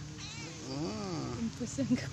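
A domestic cat meows once, a long call rising and then falling in pitch about a second in, begging for a share of the fish.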